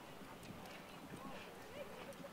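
Faint, soft hoofbeats of a horse moving on a sand arena, under faint distant voices.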